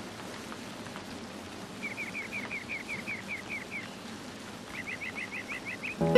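A small bird calling in two quick runs of short repeated chirps, about five a second, the first about two seconds in and the second near the end, over a steady outdoor hiss.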